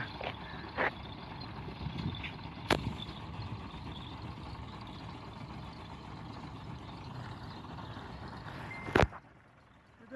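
Dump truck's diesel engine running steadily with its tipper bed raised after unloading sand, with a few sharp knocks along the way. A loud knock comes about nine seconds in, and then the sound drops away almost to nothing.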